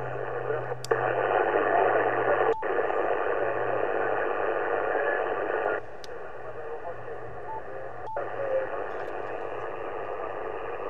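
Audio from a Yaesu FT-710 HF receiver tuned to the 40 m band in lower sideband: steady band-limited hiss of band noise with a weak station's voice under it. Four sharp switching clicks, two of them briefly cutting the audio. The hiss jumps louder about a second in and drops back a little before six seconds as the receive path is switched.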